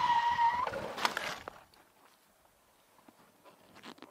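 Motorcycle tyre squealing as it skids under hard emergency braking on a bike without ABS, fading out in the first second. About a second in comes a brief clatter of impact as the bike goes down.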